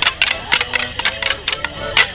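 Morris dancers' wooden sticks clashing together in quick, uneven clacks, about five a second, with the jingle of their leg bells. Melodeon music plays the dance tune underneath.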